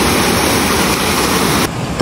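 Shallow mountain stream rushing over rocks, a loud steady rush that cuts off abruptly near the end.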